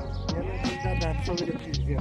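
A sheep bleating, one long wavering call, over background music with a steady beat.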